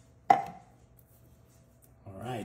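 A metal food can set down hard on the countertop: one sharp knock about a third of a second in, with a brief metallic ring.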